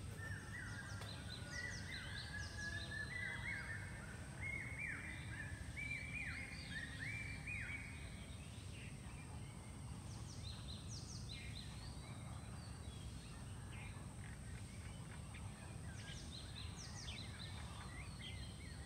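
Birds calling: one bird gives a run of short, falling notes that climb step by step in pitch over the first several seconds, and higher, thinner chirps come in about ten seconds in and again near the end, over a low steady background rumble.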